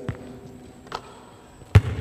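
Basketball bouncing on a hardwood court: three separate thuds, the loudest near the end, echoing in the large gym.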